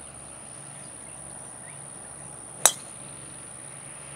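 A driver striking a golf ball off the tee: a single sharp crack of club on ball about two and a half seconds in.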